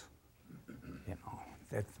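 A quiet pause in a man's speech: faint breath and low hesitation sounds from the speaker, then a single short word near the end.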